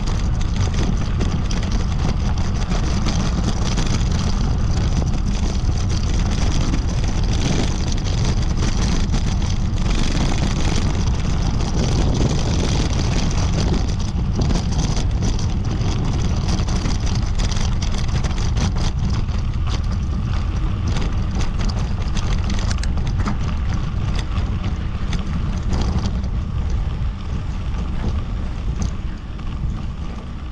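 Wind buffeting a helmet or handlebar action-camera microphone at cycling speed, a steady deep rumble, over the hiss and crunch of bicycle tyres rolling on a sandy dirt track. It eases a little near the end as the bike slows.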